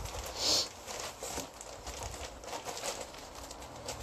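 Plastic bags of yarn skeins rustling and crinkling as they are handled and lifted from a cardboard box, with a louder crinkle about half a second in.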